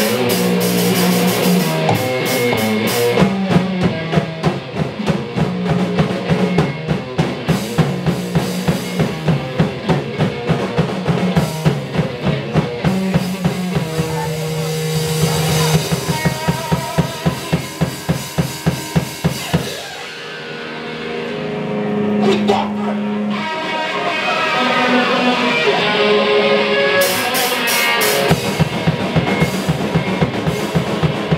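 Live hardcore punk band playing: electric guitar and bass over fast, driving drums. About two-thirds of the way in the drums drop out and the guitars carry on alone for a few seconds, then the full band crashes back in near the end.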